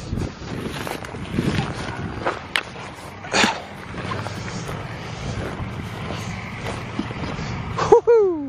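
Brisk footsteps brushing through rough moorland grass, with wind buffeting the microphone and scattered knocks; the sharpest comes about three and a half seconds in.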